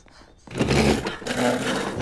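A wooden chair scraping and juddering across the floor, with hurried scuffling as a man hauls a boy up out of his seat. It starts suddenly about half a second in.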